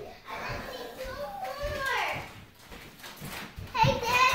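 Young children's voices, chattering and calling out while playing.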